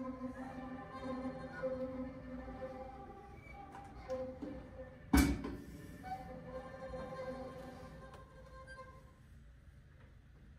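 Small string ensemble of violins and cello playing soft held chords that die away near the end. A single sharp knock about five seconds in is the loudest sound.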